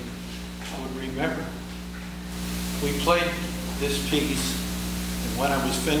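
A man talking to an audience in short phrases, over a steady low electrical hum.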